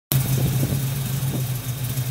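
Chevrolet 350 small-block V8 of a 1972 Camaro idling steadily with an even low pulse.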